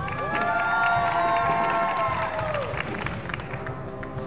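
Live show choir performance music: a long held chord that slides up into place at the start and slides down together near the end, with an audience cheering and applauding underneath.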